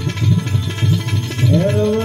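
Gujarati desi bhajan played live: a hand drum keeping a steady beat of about three strokes a second with small hand cymbals (manjira) clinking along. A sung line comes in about one and a half seconds in.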